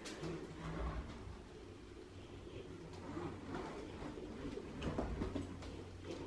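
Faint hoverboard riding on a wooden floor: a soft whir from the self-balancing board's hub motors and wheels, with a few light taps over a steady low hum.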